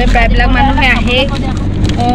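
A person's voice talking inside a moving vehicle's cabin, over the steady low rumble of the engine and road.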